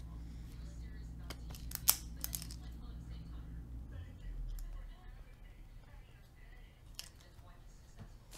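Trading cards handled on a padded mat: a few sharp taps and clicks in the first couple of seconds and one more near the end, over a low steady hum that fades about halfway through.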